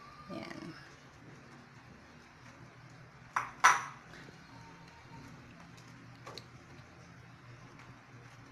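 Silicone spatula stirring grated cheese into milk sauce in a small saucepan, with two sharp knocks of the spatula against the pan about a third of a second apart midway and a lighter tap later.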